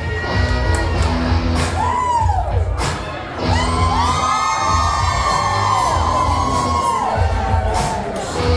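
Loud music with a steady bass beat, with a crowd cheering and whooping over it, first about two seconds in and then more strongly through the second half.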